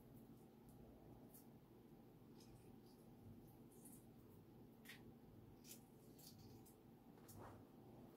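Near silence with faint, scattered small crackles and scratches: eggshell being picked and peeled off a hard-boiled egg by hand.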